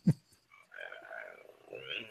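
A person's voice: the last of a quick run of throaty, croak-like grunts that fall in pitch right at the start, then soft sighing.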